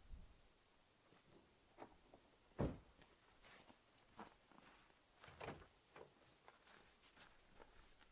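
Footsteps in snow and the clicks and knocks of a Nissan X-Trail's driver door being opened as someone climbs into the seat, with a sharp knock about two and a half seconds in.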